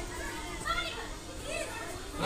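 Faint children's voices from a crowd of schoolchildren, with a few short high-pitched calls about halfway through.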